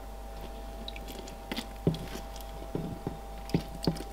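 A few soft, scattered clicks and knocks as a ceramic water bowl is handled and tipped at the back of a plastic snake tub, over a steady low hum.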